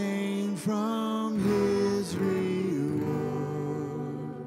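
Slow worship song: singers holding long notes to a strummed acoustic guitar.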